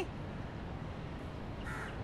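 A single short crow caw near the end, over a steady low outdoor background hum.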